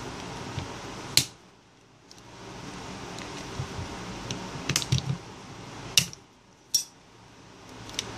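Sharp clicks of a metal pick working around the plastic housing of an LG Optimus 7 phone as its back panel is pried off, about four separate clicks with the first and one about six seconds in the loudest.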